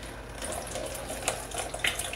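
Household bleach poured from a measuring cup through a small plastic funnel into a 2-litre plastic PET bottle: a steady trickle of liquid that starts about half a second in.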